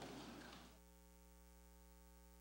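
Near silence: a faint, steady electrical hum, with the room sound dying away in the first second.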